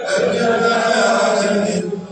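Loud devotional chanting: voices holding a sung phrase on a steady pitch, breaking in suddenly and cutting off just before the end.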